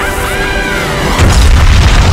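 Soundtrack music, then a loud explosion boom about a second in as a flying blue furry creature bursts into a cloud of blue smoke.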